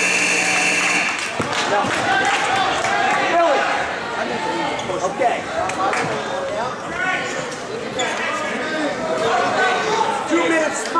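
Gymnasium scoreboard buzzer sounding for about a second and cutting off sharply, marking the end of a wrestling period. Crowd chatter and shouts fill the hall throughout.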